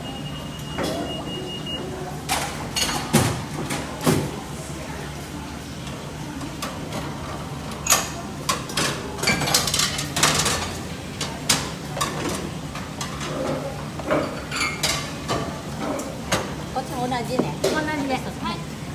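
Restaurant ambience: dishes and utensils clinking and knocking at irregular moments, with background voices and a steady low hum.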